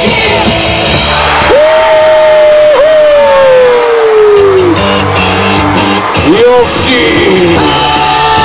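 Loud cheer-song music over the stadium loudspeakers, with the crowd singing and yelling along. About a second and a half in, a long held note slides slowly downward for about three seconds, and a short rising glide comes near the end.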